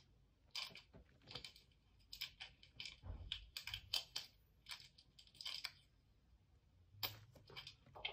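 Pencil scratching on sketchbook paper in short, irregular shading strokes, faint and clustered, with a soft low bump about three seconds in.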